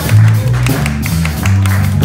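Live jazz band playing, with a moving bass line and steady drum hits, and the audience clapping over the music.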